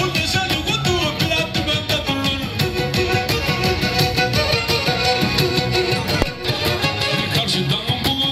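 Black Sea kemençe bowed in a fast folk tune over electronic keyboard accompaniment with a steady beat.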